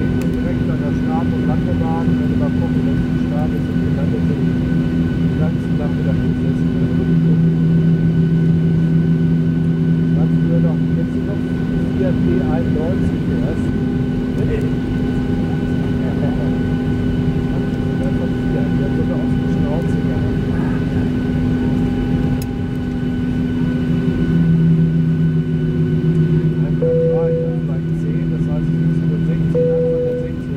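Cabin noise of a Boeing 737-600 taxiing: the steady hum of its CFM56-7B jet engines near idle, with several constant whining tones over it. A deeper tone swells for a few seconds twice.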